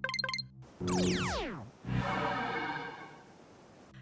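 Synthesized cartoon sound effects: a quick run of three or four short beeps, then a falling electronic sweep about a second in, then a shimmering synth chord that fades away.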